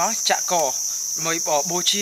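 Steady, unbroken high-pitched drone of forest insects, running under a man's talking.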